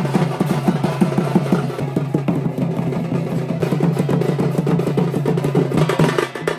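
Traditional Odia folk drumming for Danda Nacha: fast, even drum strokes, about six a second, over a steady low drone.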